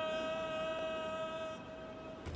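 A voice singing a long, high, steady note on "no", fading out about a second and a half in.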